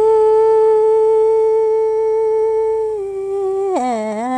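A woman's voice singing in Hmong, holding one long, steady high note for about three seconds. Near the end it steps slightly lower, then drops to a lower wavering pitch, in a sustained chant-like style.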